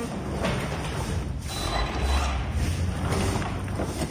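RC short-course truck driving off across a concrete floor, its motor and gear drivetrain running with a rough mechanical chatter.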